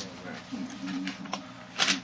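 Camera handling noise: a few sharp clicks and a short, loud rustle near the end as the handheld camera is moved about, under quiet mumbled speech.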